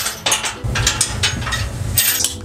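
Steel trailer frame being flipped over by hand: metal clanking and scraping, then a low rumble through the second half as it comes down onto the blankets.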